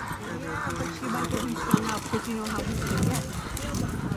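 Indistinct talking from people nearby, over the faint hoofbeats of a horse cantering on a sand arena.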